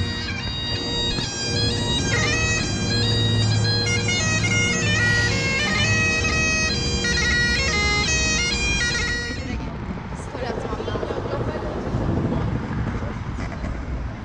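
Great Highland bagpipe playing a quick tune over its steady drones, with the melody notes changing rapidly. The piping stops about nine and a half seconds in, leaving a noisy background.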